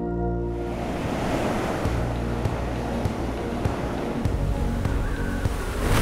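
Background music: a sustained held chord joined by a steady rushing noise texture, which swells briefly near the end.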